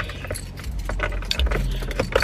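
Light clinks and rattles of something being handled, scattered through the two seconds, over a low rumble that comes up about two-thirds of a second in.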